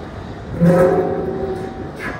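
Caterpillar 993K wheel loader's C32 V12 diesel engine revving up suddenly about half a second in, holding for about a second and then easing off, working under load as its prying arm pushes on a marble block.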